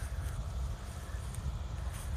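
Low, steady rumble of a truck-mounted concrete pump's engine running at a distance, mixed with wind buffeting the microphone.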